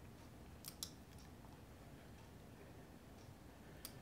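A few faint computer mouse clicks over near silence: two close together under a second in, and one more near the end.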